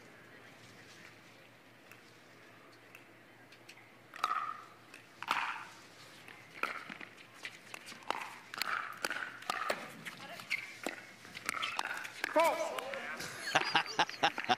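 Pickleball rally: paddles striking the plastic ball in a run of sharp pops, roughly one every half-second to second, starting about four seconds in. Voices come in near the end.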